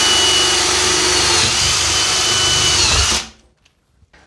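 Cordless drill running with a spade tile bit grinding through glazed porcelain wall tile, steady, then stopping suddenly about three seconds in.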